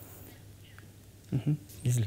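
A pause in speech: about a second of faint studio room tone, then a few short spoken syllables near the end.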